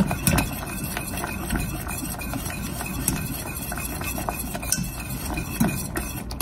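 A wire whisk beating a thin chocolate mixture in a stainless steel saucepan, its wires ticking and scraping against the pan's sides and bottom in a quick, steady run.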